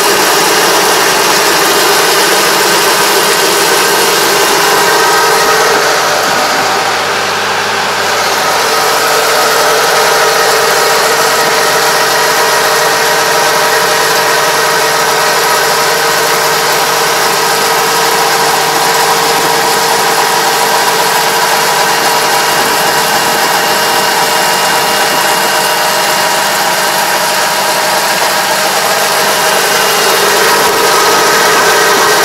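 Semi-crawler tractor's diesel engine running steadily while driving a Kobashi levee coater along a paddy levee, heard close to the machine. The sound eases slightly for a moment a few seconds in.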